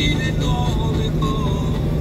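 Steady drone of a semi truck's engine and road noise inside the cab while cruising, with faint music underneath.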